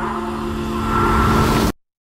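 Engine of a small utility vehicle running as it drives across the sand, under a flickering low rumble. The sound cuts off suddenly near the end.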